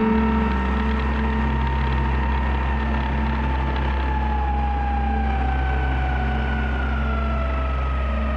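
Small outboard motor running steadily under way, pushing an inflatable boat across the water with a constant low drone.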